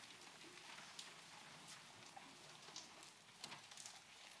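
Faint rustling and scattered small knocks of a congregation getting to its feet from wooden pews.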